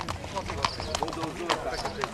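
Horse hooves clip-clopping on a gravel yard as a horse is led at a walk, about two strikes a second, with people talking in the background.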